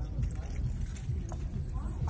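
Busy hall background: a low steady rumble with faint distant voices, and a few light clicks as an articulated plastic dragon toy is handled and set down.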